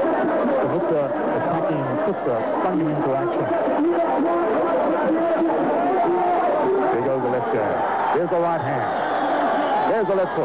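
Voices talking continuously, with crowd chatter behind them.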